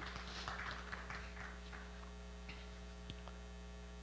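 Steady low electrical mains hum, with faint soft noises over the first two seconds and a single light click a little after three seconds in.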